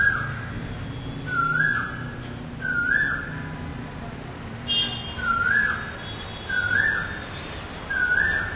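A bird calling over and over: the same short whistled note, rising quickly then holding, about six times at uneven gaps of one to two seconds. A low steady hum runs underneath.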